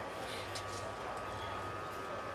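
Faint steady background hum and hiss with a thin constant tone; no distinct sound event.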